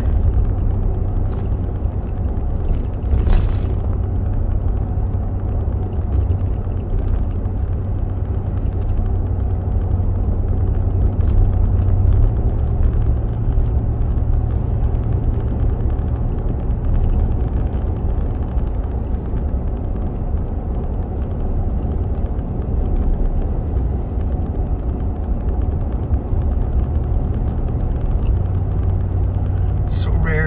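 Pickup truck driving at road speed, heard from inside the cab: a steady low engine and tyre drone.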